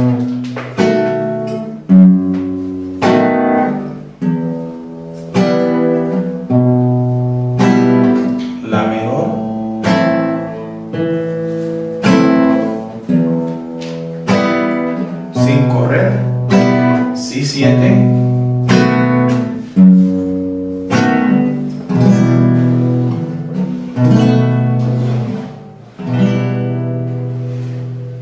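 Nylon-string classical guitar strumming a minor-key chord progression (E minor, B7, A minor) in a march-like pattern, about one chord a second, each struck sharply and left to ring.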